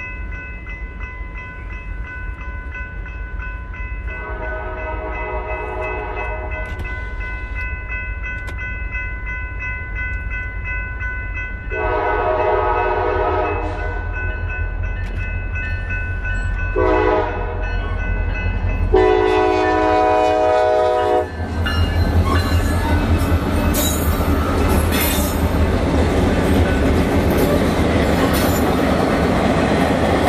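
Freight locomotive horn sounding the grade-crossing signal, two long blasts, a short one and a final long one, over the steady ringing of a crossing bell. After the last blast the locomotives pass, with engine rumble and wheels clacking over the rails.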